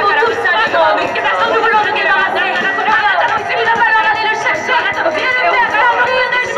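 Several performers' voices at once through a stage sound system, overlapping and wavering in pitch without a pause, with little instrumental backing.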